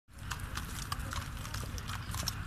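Hooves of two ponies pulling a carriage, clip-clopping at a walk on a paved road: about six uneven strikes in two seconds over a steady low rumble.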